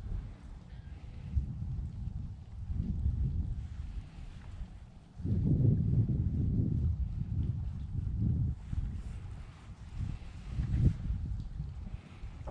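Wind buffeting the microphone: uneven low rumbling gusts, strongest from about five seconds in for a few seconds.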